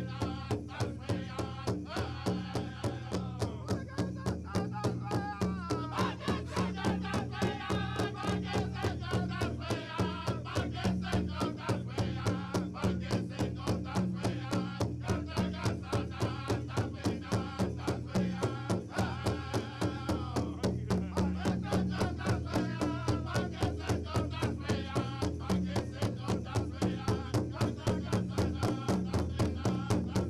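Powwow drum group playing a fancy dance song: a big drum struck in unison in a fast, even beat, with the singers' voices over it.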